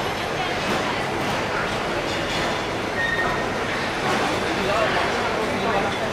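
Steady engine noise from airliners taxiing close by, with a twin-engine turboprop passing with its propellers turning. People talk faintly in the background.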